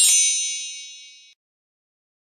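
A bright, high metallic ding sound effect: several high ringing tones struck together that die away and stop within about a second and a half.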